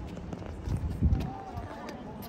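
Voices of people on an open plaza, with a short low rumble on the microphone about a second in.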